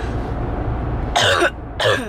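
A woman coughing sharply in a moving car's cabin, two short bursts about a second in, over steady low road noise. It is the barking, chesty cough of what she believes is a chest infection.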